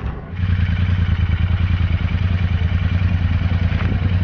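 Royal Enfield Interceptor 650's parallel-twin engine is started and runs at a steady, evenly pulsing idle, with a newly fitted performance air-intake snorkel that gives it a different grunt altogether.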